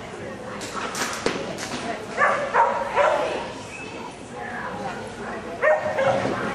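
A dog barking: three short, sharp barks in quick succession about two seconds in and another near the end, over people talking.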